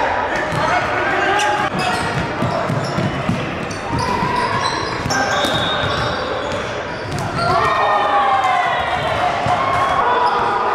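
Basketball game on a hardwood gym floor: a ball bouncing and players shouting to each other, with repeated sharp strikes throughout.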